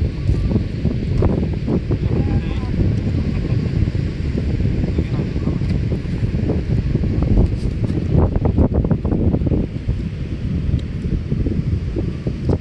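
Wind buffeting the microphone: a heavy, uneven low rumble throughout, with faint voices in the background.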